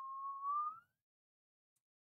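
A single short whistle, about a second long, rising slightly in pitch near its end.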